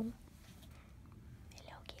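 Mostly quiet room noise, with a soft whispered word near the end.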